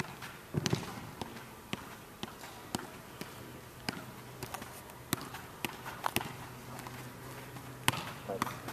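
A soccer ball being juggled on artificial turf: sharp taps of foot and knee on the ball, about two touches a second, with a steady low hum underneath.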